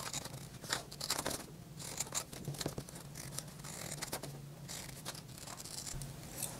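Scissors cutting through brown paper in a run of short, irregular snips.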